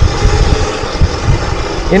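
Wind buffeting the microphone and tyre noise from a Burromax TT1600R electric mini bike rolling along a concrete sidewalk, a loud, uneven low rush.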